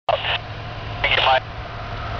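Two short bursts of a man's voice over a steady low rumble.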